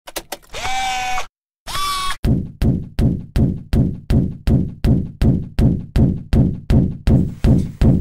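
Intro sound effect: a few quick clicks and two short pitched tones, the first settling lower and the second rising, then a steady run of regular thuds, nearly three a second.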